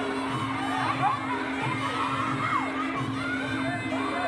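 Crowd shouting and cheering over steady background music, with scattered short whoops rising and falling.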